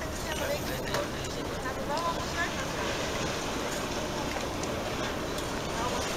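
Faint, distant voices talking over a steady outdoor background noise.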